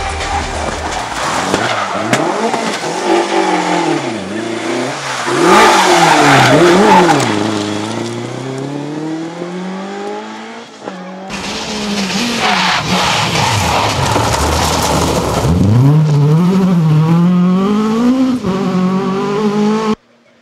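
Mk2 Ford Escort rally cars driven hard along a tarmac stage one after another, their engines revving up and falling away again and again through gear changes and lifts. The sound changes abruptly about eleven seconds in, and a second car's engine rises strongly a few seconds later.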